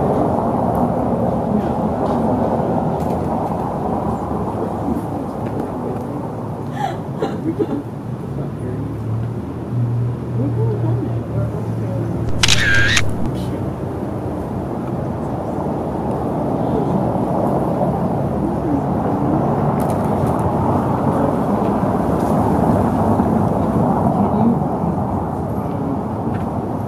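A Contax 645 medium-format film camera firing once about halfway through, its shutter followed by a short whir of the built-in motor advancing the film, over a steady bed of low, indistinct voices and outdoor ambience.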